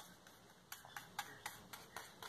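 Faint, irregular light clicks, several a second, starting about a third of the way in, as a paintbrush works paint onto a leaf cut from a plastic PET bottle.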